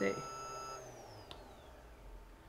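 Faint electronic whine of several steady high tones that cuts out about a second in, one tone gliding down in pitch as it dies away, followed by a single small click. This fits the bench DC power supply's electronics as its output is switched to power up the phone.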